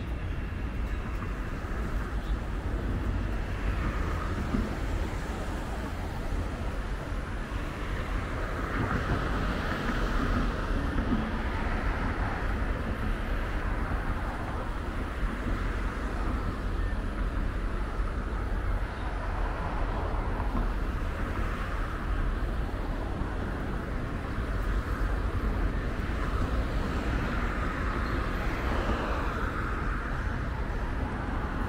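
Road traffic noise: a steady rumble of passing cars that swells now and then as vehicles go by.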